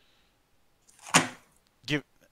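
A short, sharp breathy burst from a person close to a microphone, loud for a moment about a second in, then a brief voiced sound near the end.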